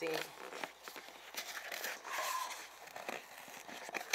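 Cardboard bank box of penny rolls being pulled and torn open by hand: irregular tearing and crinkling of the cardboard.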